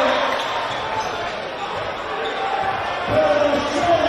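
Crowd voices and shouting in a packed, echoing gym, with a basketball bouncing on the court: a few dribbles about three seconds in and near the end.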